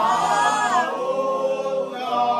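A group of people singing together without accompaniment, several voices holding long notes.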